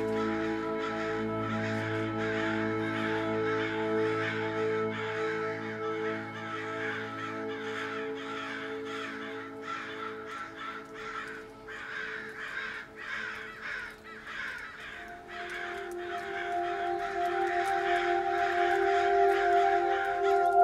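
Ambient music: held drone chords under a dense chatter of short, falling, bird-like calls. The low chord fades and a new higher chord comes in about three-quarters of the way through.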